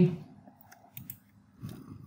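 Spoken words trail off into a near-quiet pause, with a few faint short clicks about a second in.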